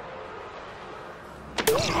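Quiet film-scene ambience, then about one and a half seconds in a sudden sharp hit, with a brief voice.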